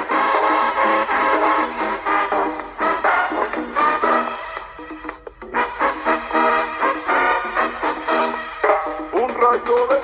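Pop music played from a cassette through the small built-in speaker of a 1983 Philips D6620 portable mono cassette recorder, thin-sounding with almost no bass. A male voice starts singing in Spanish near the end.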